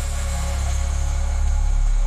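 Dubstep music in a passage of deep, sustained sub-bass drone under a steady hiss of noise, with no drum hits.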